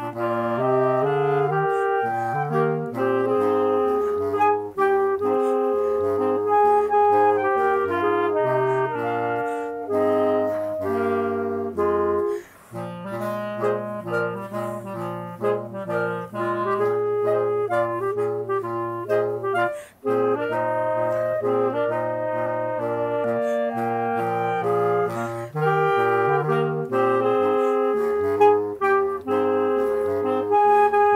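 Multitracked clarinet ensemble, one player's bass clarinet and higher clarinets playing a song in harmony over a sustained bass line. The music breaks off briefly twice, about twelve and twenty seconds in.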